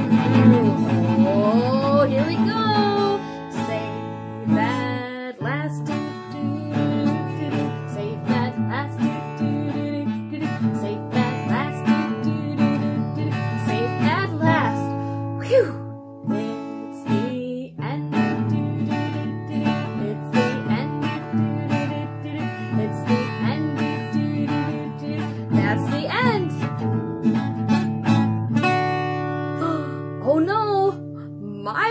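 Acoustic guitar strummed quickly at a fast tempo, with a woman's voice singing along over it. The playing breaks off briefly a little past the middle, then carries on.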